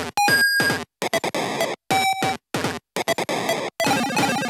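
Choppy, glitchy electronic music: loud bursts of rough noise and steady bleeps, each cut off abruptly with short silences in between.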